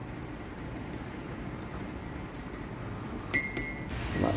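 A metal spoon clinks once against a ceramic mug about three seconds in, leaving a short ringing tone. Before it there is only a steady low room hum with a few faint ticks.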